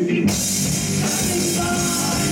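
Live rock band (drum kit with cymbals, two electric guitars and electric bass) coming in together with a crash about a quarter second in, after a quieter sung passage, then playing on loud.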